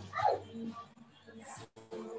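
Two short yelps, each falling steeply in pitch, in the first half second over a faint steady hum of background tones.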